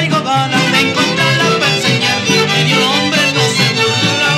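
Mariachi band playing an instrumental passage: violins carry the melody, sliding up into it at the start, over a steady rhythmic accompaniment in the low notes.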